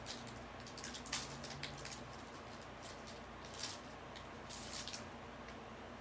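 Faint rustling and crinkling of a foil baseball-card pack wrapper and cards being handled, in a few short soft bursts: about a second in, a little past the middle and near the end.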